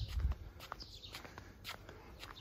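A few footsteps on a paved garden path.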